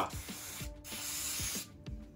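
Aerosol can of penetrating oil spraying in two hissing bursts, a short break about two-thirds of a second in, onto a seized sewing machine mechanism to loosen it.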